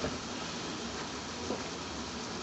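Steady, faint hiss of kitchen background noise, with one faint tap about one and a half seconds in.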